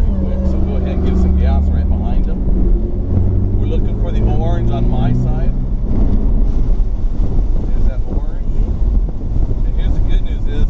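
Ferrari 488's twin-turbo V8 heard from inside the cabin, running steadily as the car gathers speed on track. Its low note steps up in pitch about three seconds in and turns rougher after about six seconds.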